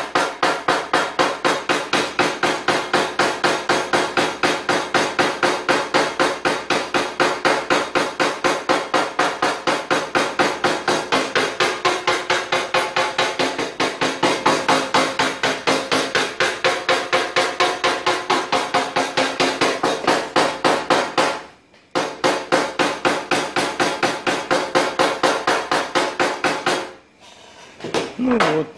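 A paintless-dent-repair tap-down hammer knocking rapidly on a steel car fender, about four or five light taps a second, with brief pauses about three-quarters of the way through and near the end. The taps are knocking down a raised ridge that has formed like a belly beside the dent, blending the high spot into the panel.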